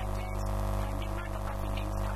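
Loud, steady electrical mains hum on the recording, a low drone with many buzzing overtones. A woman's voice is faintly audible beneath it.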